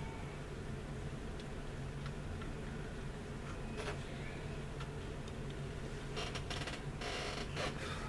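Faint clicks and scrapes of plastic as the engine cowling of a 1/40 Revell AD-6 Skyraider plastic model is worked loose by hand, with a quicker run of clicks near the end as it comes off. A steady low hum runs underneath.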